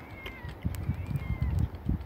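Uneven low rumbling of wind buffeting the microphone, loudest in the second half, with faint short high-pitched whistling calls at the start and again about one and a half seconds in.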